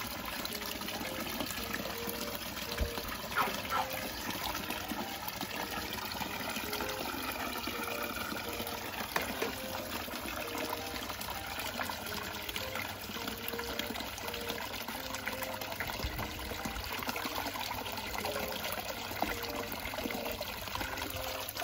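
Water gushing steadily from a garden hose and splashing into a plastic basin that is already full of water.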